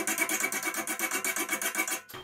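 Hand file rasping in quick, even back-and-forth strokes, about six a second, over a raised weld bead on a steel chassis tube, taking it down so a notched tube can seat.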